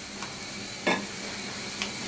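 Pumpkin curry sizzling and simmering in an aluminium karahi over a gas burner, a steady hiss, with one short knock about a second in.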